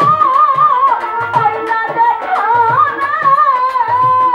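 A woman singing a Bengali Baul folk song in a loud, ornamented voice, accompanied by violin and a steady rhythm of drum beats.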